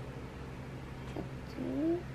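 A young child's short wordless whine, rising in pitch near the end, after a light click about a second in.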